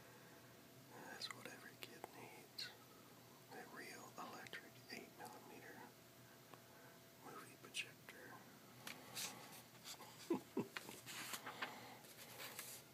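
Soft whispering, then a page of a 1973 Sears Wish Book catalog being turned near the end, with a few quick paper rustles and crackles.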